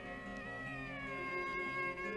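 Soft background score of sustained held notes that slide slowly in pitch, with no beat.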